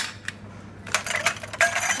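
Ice cubes dropped into a cocktail glass, a few sharp clinks bunched toward the end, with glass ringing briefly after them.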